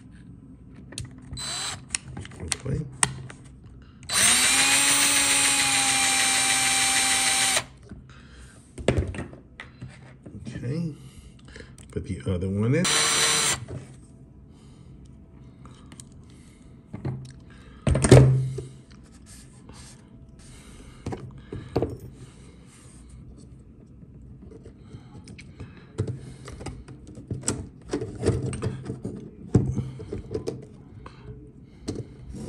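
Cordless drill driving a screw: one steady run of about three and a half seconds, then a shorter run about twelve seconds in whose pitch rises as it spins up. Scattered clicks and handling knocks around it, with a loud single thump about eighteen seconds in.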